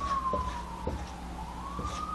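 A siren wailing: one tone that falls slowly and rises again, with a few light taps of a marker on a whiteboard.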